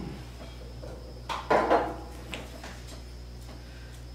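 A few light clinks and knocks of hand tools and metal parts being handled on a workbench, the loudest cluster about one and a half seconds in.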